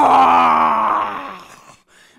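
A woman storyteller's long, loud, wordless vocal sound, made as the sound of the troll appearing from under the bridge. Her pitch sinks slightly, and the sound fades out about a second and a half in.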